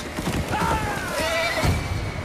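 Horses whinnying, with several falling calls, over galloping hoofbeats. A heavy hit comes near the end.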